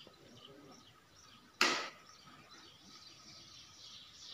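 Faint bird chirping, with one sudden short burst of rushing noise about a second and a half in that dies away within a moment.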